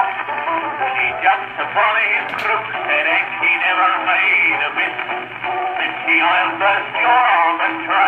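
Music from a pink Lambert celluloid cylinder record played on a Columbia BC Graphophone through its large brass horn. The sound is thin and old-fashioned, with nothing above the upper midrange, over a steady low hum.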